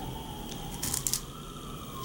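Brief crackling of a thin plastic tray, about a second in, as a wax melt loaf is pulled free of it.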